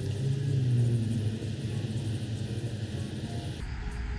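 A motor vehicle passing by: a low engine hum that slowly falls in pitch and fades out over about three seconds.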